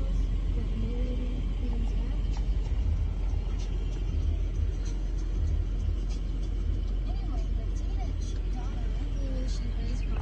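Steady low rumble inside the cabin of a parked 2015 Range Rover Vogue with its engine running, with faint voices in the background.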